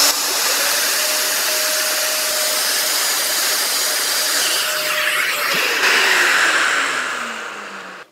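Festool plunge router running as its cutter routes a hole through veneered walnut along a template. Near the end the motor is switched off and winds down, its pitch falling and the sound fading away.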